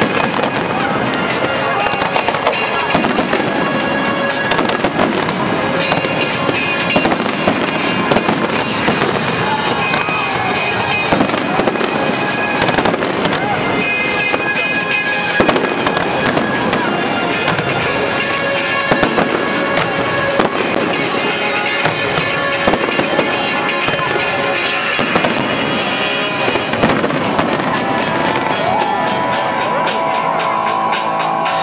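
Aerial fireworks bursting and crackling without pause, with music playing underneath.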